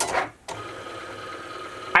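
Cricut Explore Air 2 cutting machine running a cut in contact paper, its carriage motors giving a steady whir with one steady tone that starts about half a second in.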